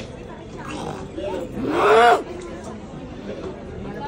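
A woman's loud vocal cry about two seconds in, its pitch rising and then falling over about half a second, preceded by a fainter rising cry, over crowd chatter.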